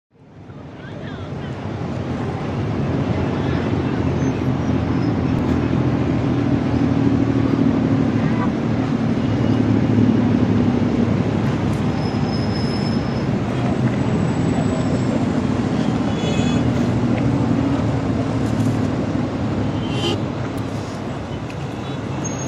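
Steady city traffic and engine noise with a low hum, fading in over the first couple of seconds.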